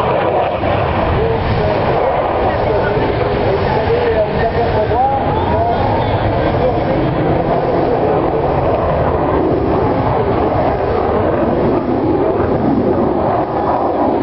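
Fighter jet flying over during an air-show display, its engine noise a steady, loud rush, with people talking among the spectators.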